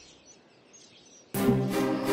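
Faint outdoor ambience with a few small bird chirps, then film background music starts suddenly about a second and a half in, with held notes.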